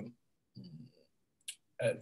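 A man's voice over a video call, pausing mid-sentence. A word trails off at the start, a faint murmur follows, then a single short click, and his speech resumes near the end.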